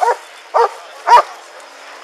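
Police K9 dog barking three times, about half a second apart, with the last bark the loudest. It is guard barking at a detained suspect while the dog is held on the "watch him" command.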